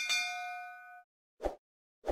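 A bell-like ding sound effect, several tones ringing together for about a second before cutting off, as the animated subscribe button switches to subscribed. A short low pop follows about one and a half seconds in.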